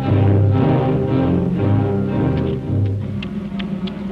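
Orchestral cartoon score music, low strings carrying a melody in a quick succession of notes, a little softer toward the end.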